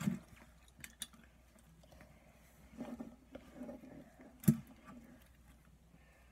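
Faint sticky squishing and small clicks of hands working a ball of slime, with one sharp knock about four and a half seconds in.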